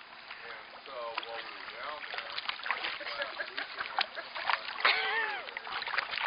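Water splashing and sloshing in a swimming pool as a dachshund paddles through it and climbs onto the step, with people's voices over the splashing.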